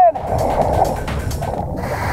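Underwater breathing noise of a scuba diver: a gurgling rush of exhaled bubbles, then a brighter hiss of breath drawn through the regulator near the end.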